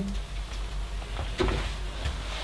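Handling noises as things are taken down from hallway hooks: small clicks and rustling, with one sharper knock about one and a half seconds in.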